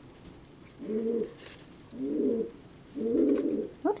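Domestic pigeon cooing: three low coos about a second apart, each lasting around half a second to a second.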